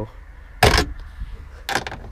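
Ratchet and socket on a taillight stud nut: two short metallic rattles about a second apart. The socket keeps slipping off the nut because the nut sits just at the tip of a shallow socket.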